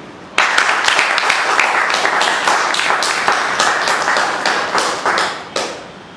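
Audience clapping. It starts suddenly about half a second in, keeps up steadily, then dies away just before the end.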